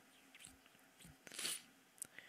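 Near silence broken by a couple of faint clicks and a short mouth noise close to the microphone about a second and a half in.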